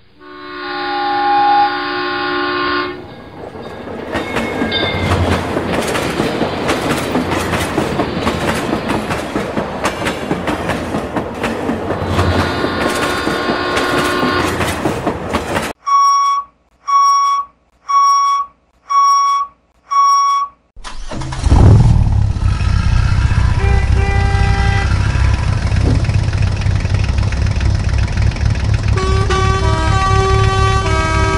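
Dubbed railway sound effects: a train horn, then the clattering rattle of a passing train with a second horn blast, then five evenly spaced beeps of a level-crossing warning signal about one a second. From about 21 s in, a truck engine rumbles steadily under a series of horn toots at changing pitch.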